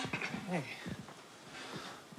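A handheld microphone being passed from one person to another: a sharp handling knock at the start, then faint, short murmured voices in the first second and low background hiss.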